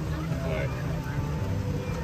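Golf cart driving along a dirt road: a steady low rumble of motor and tyres, with voices faintly in the background.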